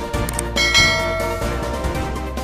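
Background music with a bright bell-like chime sound effect that rings out about half a second in and fades over about a second.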